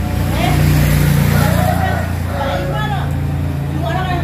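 A steady low motor hum, loudest in the middle, with faint voices over it.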